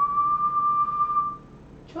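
A person whistling one steady note, about a second and a half long, at the end of a two-note call to a pet parrot to get it to respond.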